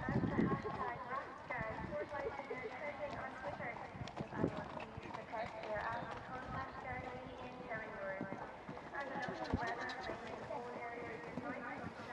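A horse's hoofbeats as it canters on a sand arena surface, under steady background chatter of voices.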